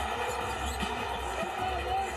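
Basketball game sound from a near-empty arena: a steady low room hum with a few faint thuds of a ball being dribbled on the hardwood.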